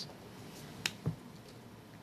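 Quiet room tone with a single sharp click a little under a second in, followed shortly by a soft low thump.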